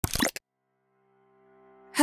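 Logo-intro sound effect: a quick pop with a couple of short blips in the first half-second, followed by a faint held musical chord.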